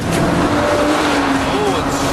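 Six-cylinder roadster engine held at steady high revs on a race circuit: one sustained note that sags slightly, over tyre and wind noise.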